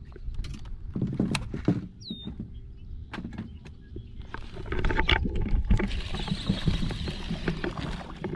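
Irregular knocks and clicks of handled fishing tackle and a small boat's hull, over a steady low rush of wind and water. A louder hissing wash fills the second half.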